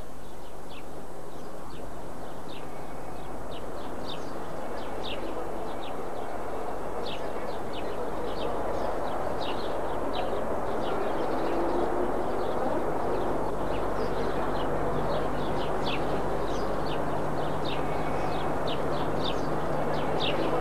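Small birds chirping in many short, irregular high notes over a steady hiss with a low hum. The chirps start about two seconds in and grow more frequent.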